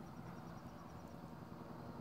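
Faint outdoor background noise in a pause in speech, with a faint, rapid, high-pitched pulsing, about nine pulses a second, that stops about a second and a half in.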